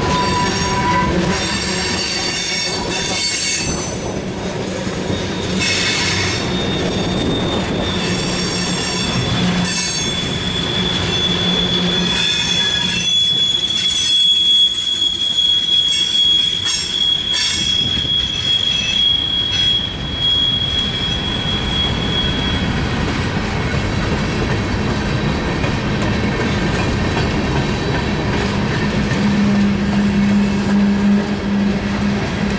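Freight cars of a CSX mixed freight train rolling past close by, the wheels rumbling on the rails with scattered clanks and clicks. A steady high-pitched wheel squeal sets in about six seconds in and stops about two-thirds of the way through.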